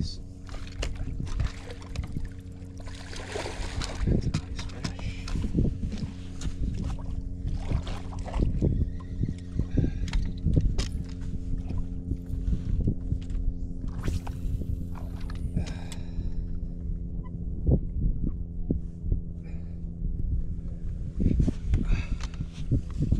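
A walleye being landed with a landing net and handled on a boat deck: repeated knocks and thumps from the net, rod and fish against the boat, over a steady low hum of several tones that runs throughout.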